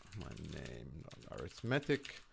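Keystrokes on a computer keyboard as a line of text is typed out, with a man's voice under it.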